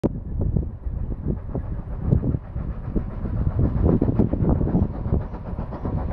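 Approaching steam train: a low rumble broken by a rapid, uneven run of puffs.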